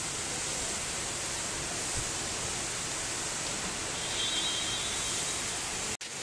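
Steady hiss of background noise, strongest in the high range, with a faint thin high tone lasting about a second, about four seconds in.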